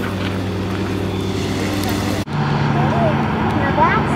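A motor running with a steady low hum that breaks off abruptly about two seconds in and resumes at a slightly different pitch.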